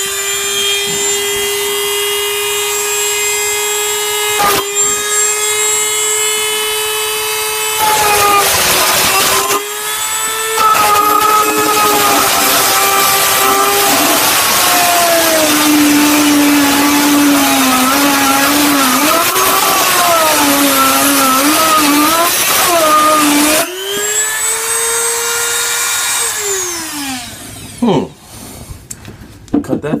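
Dremel 200 corded rotary tool running on high with a cutoff wheel, a steady high whine, then cutting through a metal stud. Harsh grinding starts about 8 seconds in, and the motor's pitch drops and wavers under the load. Near the end the pitch rises again as the wheel comes free, then the tool is switched off and winds down.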